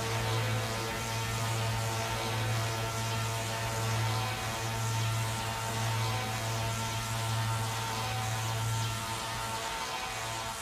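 Electronic house-music breakdown with no drum beat: a held low bass drone that swells slightly, under a sustained synth pad, then drops out near the end.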